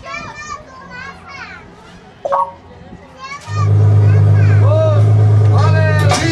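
Children's voices calling and shouting in the background, with a single sharp knock a little over two seconds in. From about halfway through, a loud, steady low hum takes over.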